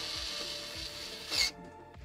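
A rubbing scrape lasting about a second and a half as the 3D printer's sheet-metal base panel is shifted by hand. It flares briefly just before it stops, with faint background music underneath.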